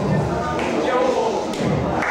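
Thuds of a breakdancer's body and feet hitting a hard floor during spinning power moves, over the indistinct chatter of onlookers.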